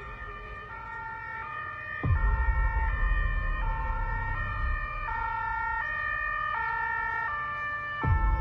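German-style two-tone emergency-vehicle siren, switching between a high and a low pitch about every three-quarters of a second. A low rumble runs underneath and gets louder about two seconds in.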